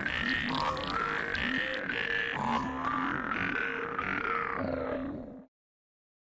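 TV channel ident jingle: a run of short, buzzy pitched notes, about two a second, that cuts off suddenly about five and a half seconds in.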